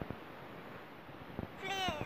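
A cat meowing once near the end, a short high call that falls in pitch, over faint background hiss.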